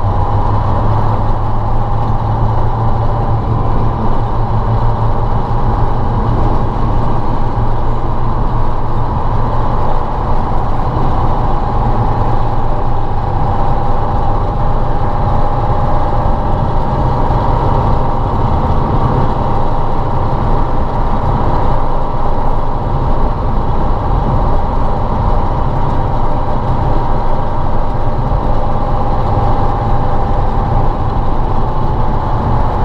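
Ural logging truck's YaMZ-238 V8 diesel engine running steadily while the truck drives along, loud and unchanging, with a constant higher tone over the low hum.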